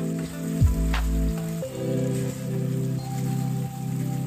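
Background music playing over the sizzle and bubbling of a thick onion and garlic curry simmering in a pan.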